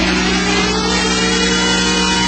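Hardstyle track at a break in the beat: one held synthesizer tone with a faint upper line slowly rising, and no drums.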